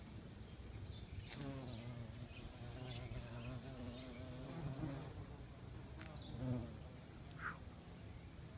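Eastern carpenter bee buzzing in flight close to the microphone: a low wing-buzz with a wavering pitch that starts about a second in, runs for some four seconds, and returns briefly near the end.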